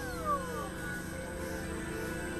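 Experimental synthesizer drone music: steady layered tones, with a short falling pitch glide near the start that is loudest about a third of a second in.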